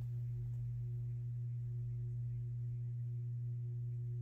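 A steady low hum with a fainter, higher steady tone above it, unchanging throughout; nothing else is heard.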